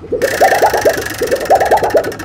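A rapid buzzing rattle that starts a moment in, with short warbling pitched pulses about a dozen a second, like a small motor or machine.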